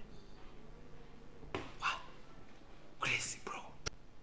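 Faint whispered speech: two short breathy utterances, about a second and a half in and about three seconds in, with a single sharp click just before the end.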